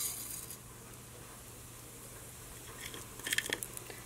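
Cumin seeds poured into hot oil in a stainless steel pan, with a brief sizzle as they land. About three seconds in comes a quick cluster of small crackles as the seeds begin to fry.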